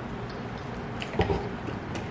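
Mostly quiet room tone, with one brief mouth sound about a second in from people eating noodles and drinking water.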